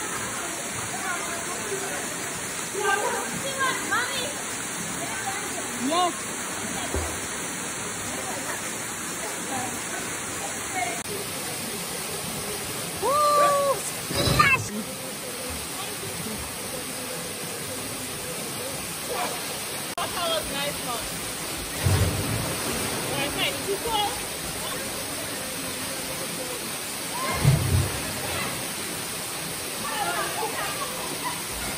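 Steady rushing of Annandale Waterfall, with scattered voices talking and calling over it and a couple of dull low thumps near the end.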